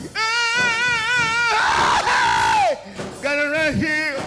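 A man singing a gospel song into a microphone, holding long notes with vibrato. Around the middle, a burst of shouting rises over a held note that then slides down.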